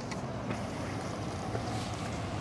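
Steady low hum and hiss of outdoor background noise, with no distinct event.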